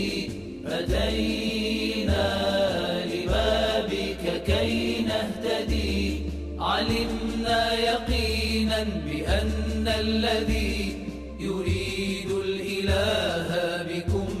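Arabic devotional song in praise of the Imam: a voice chanting the verses over a deep beat that comes about once a second.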